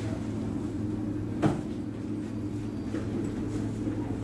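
Steady low hum of a Singapore MRT train running, heard from inside, with one sharp click about a second and a half in.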